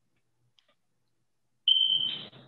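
Near silence, then near the end a single loud, high-pitched electronic beep: one steady tone that starts abruptly and runs on past the end, with a noisy rustle coming in under it.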